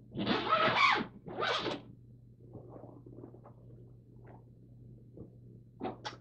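A zipper on a soft travel bag pulled open in two quick strokes, the second shorter, followed by faint rustling as the bag is handled.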